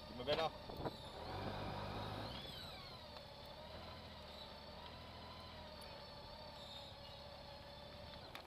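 Honda Gold Wing motorcycle engine running quietly at low speed as the bike rolls slowly, a low steady hum. Brief voice-like calls are heard about half a second in and again just before the one-second mark.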